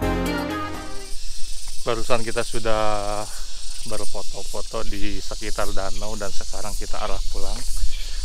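Background music fades out in the first second. Then a man talks close to the microphone in quick, continuous speech.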